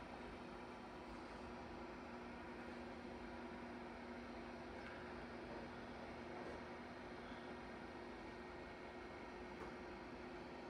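Quiet room tone: a faint, steady hiss with a low, steady electrical hum.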